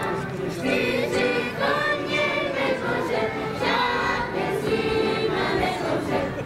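A group of voices singing a song together in a choir, phrase after phrase, with music.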